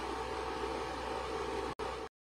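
Steady room hiss with a low hum, no playing or speech, cutting out for an instant near the end.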